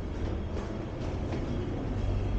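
Steady low rumble of a metro train moving through the station, with faint footsteps on the stone stairs about once a second.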